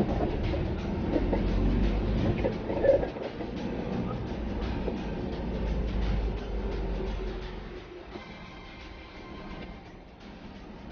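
Car interior noise while driving slowly in traffic: a low engine and road rumble that dies down about eight seconds in.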